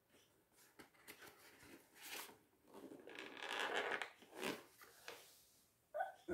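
Faint rustling and scraping of packaging being handled, with small clicks, loudest about three to four seconds in.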